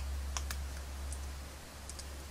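A few light clicks and taps from metal tweezers picking up and placing small paper stickers, over a steady low hum.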